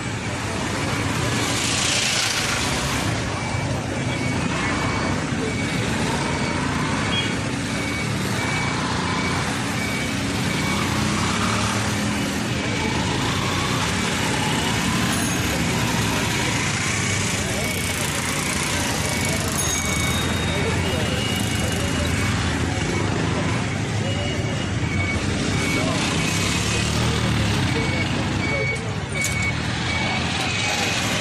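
Street traffic noise with people talking in the background, and a faint high beep repeating evenly through most of it.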